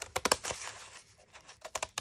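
Scissors snipping through corrugated cardboard, a series of sharp crunchy clicks as the blades cut across the ridges: several in the first half second, then a quicker run near the end.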